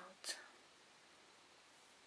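A woman's brief muttered word with a soft hiss at the very start, then near silence: room tone.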